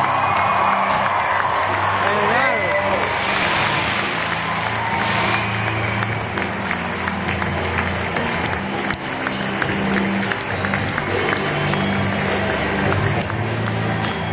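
Music with a steady bass line playing through stadium loudspeakers, over a crowd cheering and clapping; a few voices shout and whoop in the first few seconds.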